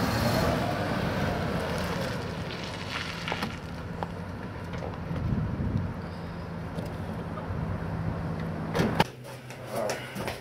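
Wind on the microphone over a steady low hum, with a few knocks. A van door shuts loudly near the end.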